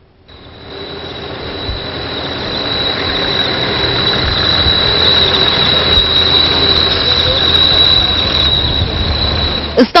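A solar-powered electric city bus running in street traffic, its noise growing louder over the first few seconds and then holding steady, with a constant high-pitched whine throughout.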